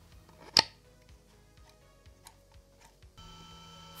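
One sharp plastic click about half a second in as a 3D-printed polycarbonate turbine blade is snapped into its housing, followed by a few faint ticks. A steady hum starts near the end.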